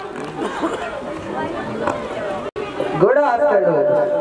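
Speech only: overlapping voices and chatter, broken by a sudden brief dropout about two and a half seconds in, after which one voice comes in louder.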